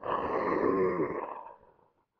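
A drawn-out moaning voice, one continuous sound that fades out over about a second and a half.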